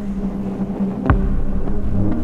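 Ambient electronic music: a low, throbbing synth drone with a steady held tone, and one deep thump about a second in.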